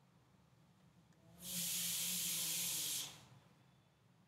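A steady hiss that starts about one and a half seconds in, lasts about a second and a half and fades in and out.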